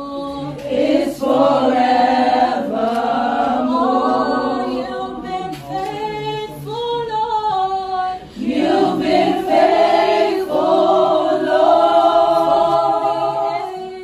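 A small group of women singing a worship song together without accompaniment, the bride's voice among them, holding long notes.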